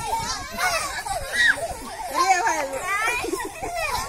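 A group of children's voices calling and shouting over one another, several at once, with pitch rising and falling.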